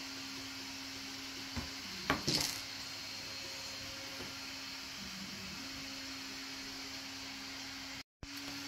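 Handling of a small circuit board against a display's metal back plate: a light click, then about two seconds in a short clatter. Steady hiss and a low, steady hum run underneath.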